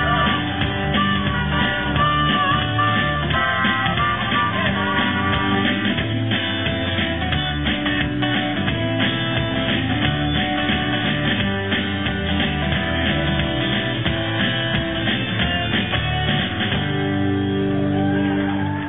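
Live rock band playing an instrumental passage with no singing: strummed acoustic guitar and electric guitar over bass and drums, at a steady beat.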